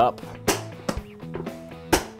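Two sharp snaps from a Pelican 1500 hard plastic case being sealed shut, one about half a second in and one near the end, over quiet background guitar music.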